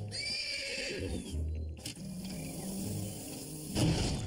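Cartoon soundtrack: a shrill, high-pitched cry over the first two seconds, set over background music with a slow stepping bass line, and a sharp hit near the end.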